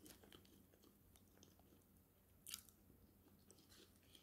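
Faint chewing of food, with soft scattered mouth clicks and one short, louder smack about two and a half seconds in.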